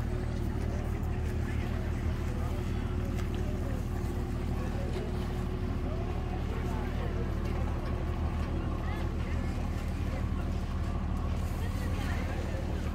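Boat engine running steadily with an even low hum, with indistinct voices talking in the background.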